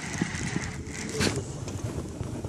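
Handling noise from an angler working a baitcasting reel and swinging the rod, with wind on the microphone. There is a faint steady whine near the start and one sharp knock about a second and a quarter in.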